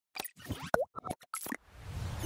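Animated logo sound effects: a quick run of short pops, one with a sliding pitch, then a whoosh swelling near the end.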